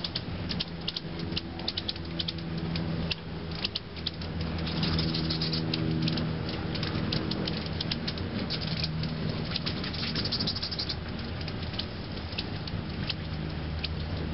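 Hummingbird wings humming as the birds hover at a feeder close to the microphone; the hum wavers in pitch and strength as they shift position. Many short, sharp high chips and ticks come through the hum.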